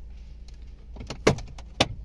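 Two sharp plastic clicks, about a second in and near the end, as a car's dashboard trim panel is pulled against its locking clips, over a steady low hum.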